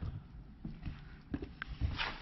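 Faint handling noises: a few short, soft knocks and taps spaced irregularly through a quiet stretch.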